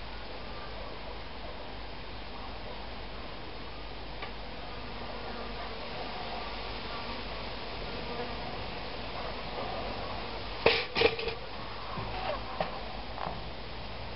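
Cheap pop-up toaster releasing its carriage: about ten and a half seconds in, a sharp clack as the spring throws the toast up, followed by a few lighter clicks. The toast pops up normally and is not catapulted out.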